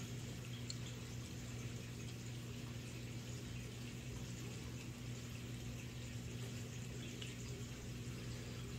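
Faint, steady sloshing of tank water and nitrate reagent powder being shaken by hand in a small sample vial to mix the test, over a low steady hum.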